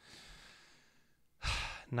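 A man breathing out in a faint, drawn-out sigh, then a short, louder breath about a second and a half in.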